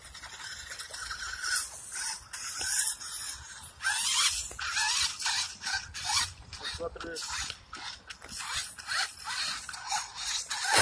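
Electric motor and gears of a 1/10 scale RC rock crawler whining in short rising bursts with the throttle, while its tyres churn and splash through shallow muddy water.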